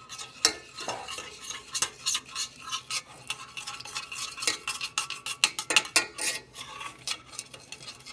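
A spoon stirring in a stainless steel saucepan, scraping and clinking irregularly against the pan's sides and bottom as purple food coloring is mixed into a sugar mixture.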